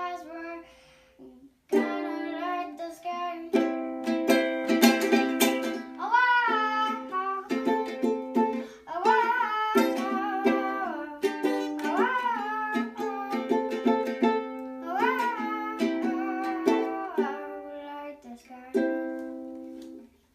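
Ukulele strummed in chords with a child's voice singing along. The playing drops away briefly about a second in, then resumes, and a final chord strummed near the end rings out.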